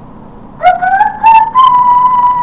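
A person whistling loud enough to overload the recording: about half a second in the note starts low, slides up in a few small steps, then holds one steady pitch.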